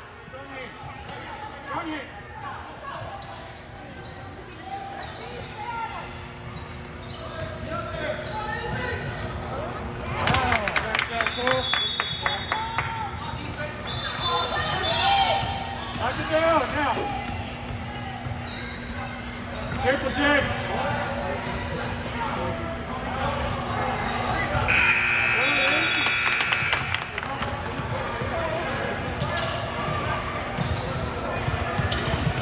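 Basketballs bouncing on a hardwood court, with a mix of players' and spectators' voices echoing in a large gym. Late on, a buzzing tone sounds for about two seconds.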